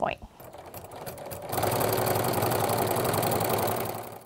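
Home sewing machine with a walking foot stitching a straight quilting line through a layered quilt. It speeds up over the first second and a half, then runs steadily at a fast, even needle rate.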